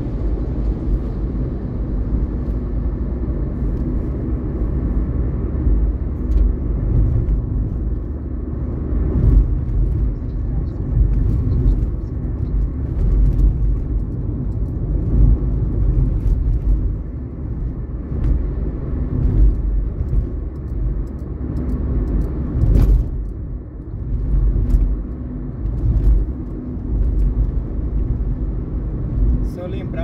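Car cabin noise while driving in city traffic: a steady low rumble of engine and tyres on the road, rising and falling with the car's speed, with a few light knocks, the clearest about 23 seconds in.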